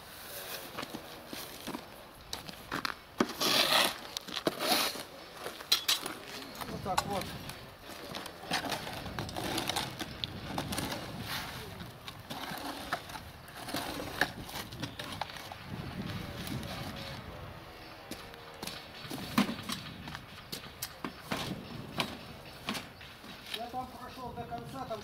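Rake and shovel scraping and raking dry grass, soil and debris across the ground and onto a wooden board: irregular rustling scrapes with sharp knocks, loudest a few seconds in.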